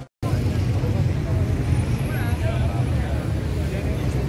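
Outdoor city-square ambience: a steady low rumble of street noise with faint, distant voices.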